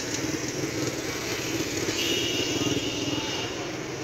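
Busy street traffic: motor vehicle and motorcycle engines running as a steady noise, with a thin high tone held for about a second and a half past the middle.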